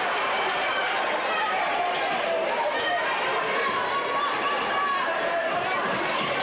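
Crowd of spectators in a gymnasium talking and calling out, many voices overlapping in a steady hubbub.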